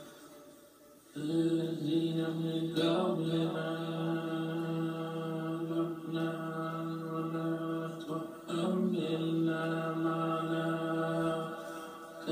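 Recorded chant-like drone music. It starts about a second in after a near-silent pause, then holds long steady notes on one pitch, with short breaks near three seconds and again around eight and a half seconds.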